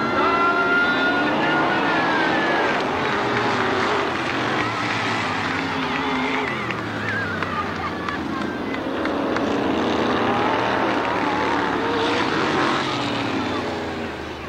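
Several dirt-track modified race cars running on the track, their engine notes rising and falling as they accelerate and back off.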